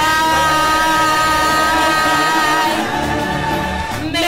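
A lively song with a long held sung note lasting about two and a half seconds over a full band accompaniment, the big finish of the song.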